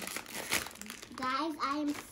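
Plastic bag of cotton candy crinkling as it is pulled open, followed about a second in by a child's voice.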